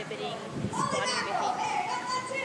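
Background chatter of children's voices, high-pitched talking and calling.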